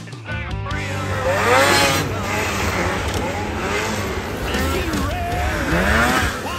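Racing snowmobile engines revving up and down, several pitches rising and falling over one another. Music cuts off just under a second in.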